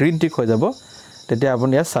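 A man's voice speaking in two short phrases with a half-second pause between, over a steady, high-pitched pulsing trill that runs on through the pause.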